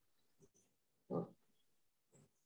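A single short grunt about a second in, over otherwise faint room tone.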